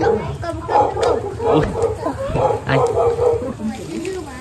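Wordless, excited vocal sounds and laughter from a young man who cannot speak, with other voices around.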